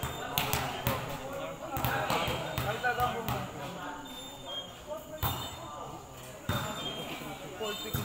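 Players' voices talking and calling out across a volleyball court, with several sharp thuds of the volleyball being struck or bounced.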